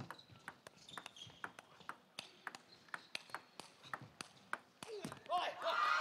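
Table tennis rally: the plastic ball clicking sharply off rackets and table in quick succession, a few hits a second. Near the end the rally stops and a loud burst of shouting and cheering breaks out as the point is won.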